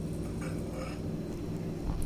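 A steady low hum of kitchen room tone, with a faint low bump near the end.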